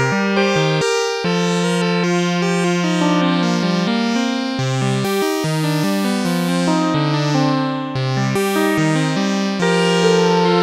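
Five-voice Moog analog synthesizer chain, a Little Phatty keyboard driving four Slim Phatty modules in poly mode, playing chords. Several sustained notes sound together and shift every half second to a second.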